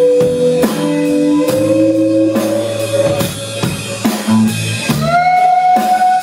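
Live band playing an instrumental passage. Electric guitars play long held notes over a drum kit's steady beat, and one note slides up and holds about five seconds in.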